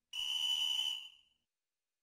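A single whistle blast, one steady high tone lasting about a second, as a sound effect signalling "stop".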